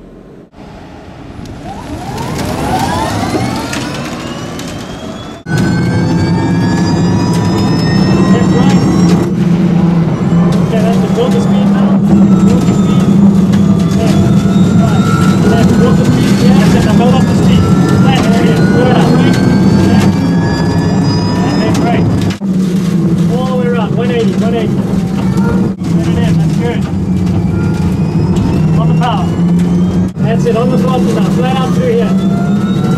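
Nissan Leaf NISMO RC's electric motor and single-speed drive whining, rising steeply in pitch as the car launches from a standstill. About five seconds in, a loud steady rumble of road and wind noise fills the stripped race cabin, with the motor whine rising and falling as the car accelerates and slows through the corners.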